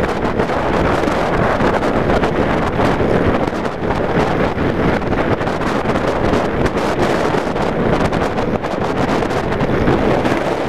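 Heavy wind noise buffeting the microphone of a motorcycle-mounted camera at road speed, over the steady running of the cruiser motorcycle beneath it.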